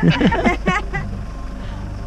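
Mitsubishi L200 pickup's engine running steadily at low revs as the truck crawls over a rock, with a voice speaking briefly in the first second.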